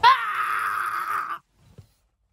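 A high-pitched scream, about a second and a half long, that starts suddenly and is cut off abruptly.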